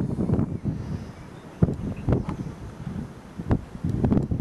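Wind buffeting the camera microphone in uneven gusts, with a few brief sharp knocks.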